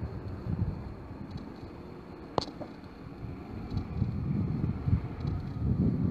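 Low street rumble with wind buffeting the microphone, and a single sharp click a little over two seconds in. The rumble swells toward the end as a pickup truck drives past.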